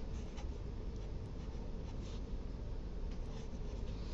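Sharpie marker writing numbers on paper: a few short, faint felt-tip strokes over a low steady room hum.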